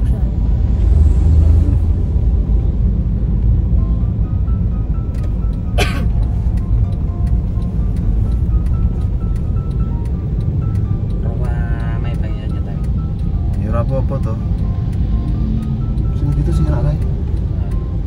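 Steady low rumble of road and engine noise inside a moving car's cabin, with music playing over it: a simple melody stepping between held notes. A short, sharp sound cuts through about six seconds in.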